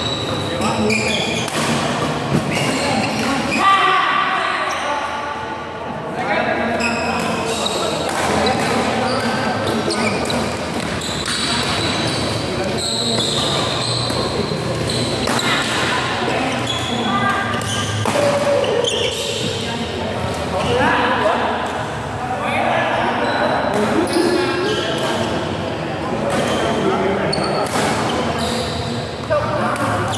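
Badminton rally: repeated sharp racket hits on the shuttlecock, heard over people talking through most of the stretch.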